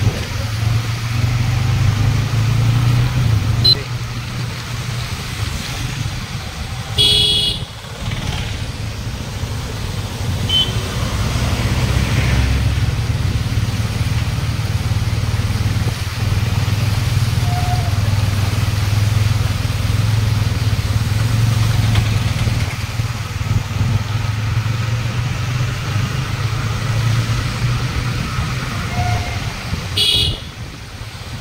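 Motorcycle engine running steadily while riding slowly along a wet, waterlogged street. There is a short vehicle-horn beep about seven seconds in.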